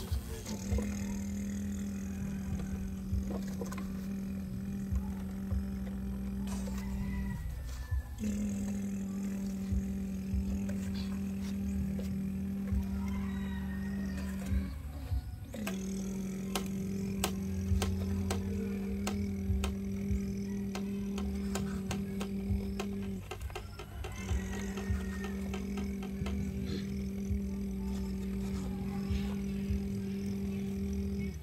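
A person humming a steady, low, unchanging drone to imitate a truck engine, held in four long notes of about seven seconds with short breaths between them. Light clicks and scrapes come from the plastic toy excavator and trucks in the sand.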